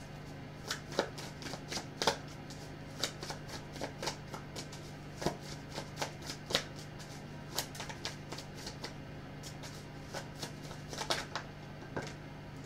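A deck of tarot cards being shuffled by hand: irregular soft snaps and flicks of the cards, a few at a time, over a faint steady hum.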